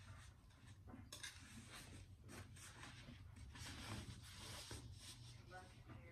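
Faint rustling and scraping of a fabric shoe-rack cover being worked onto thin metal poles, in irregular scratchy strokes that are busiest a little after the middle, over a low steady hum.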